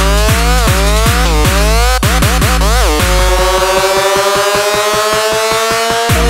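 Hard dance electronic track: a heavy kick drum about two and a half times a second under rising synth lead notes. About halfway through the kick drops out, and a build-up of long, slowly rising synth tones over a fast pulsing roll runs until the beat comes back at the end.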